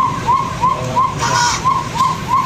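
Police car siren in a fast yelp, a short rising-and-falling wail repeating about three times a second, over a steady low rumble. A brief burst of hiss comes a little after a second in.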